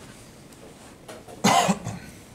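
A person coughing once, short and loud, about a second and a half in.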